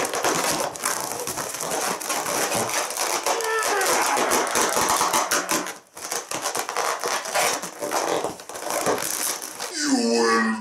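Heart-shaped Mylar foil balloon being squeezed and pressed hard between the hands, its foil skin crinkling and crackling without a break, with a short let-up about six seconds in. Now and then a strained grunt or laugh can be heard over it.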